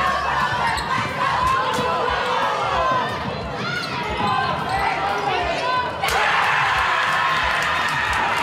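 A basketball dribbled on a hardwood gym floor amid game action, with many short high squeaks from sneakers on the court. Players and spectators call out, and the crowd noise swells about six seconds in.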